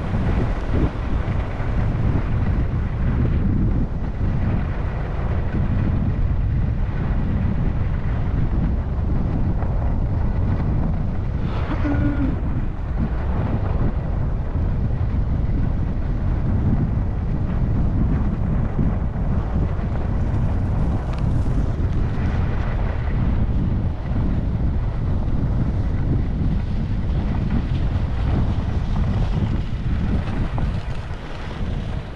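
Wind buffeting a skier's camera microphone during a downhill run, a steady low rumble, with the skis sliding over groomed snow beneath it.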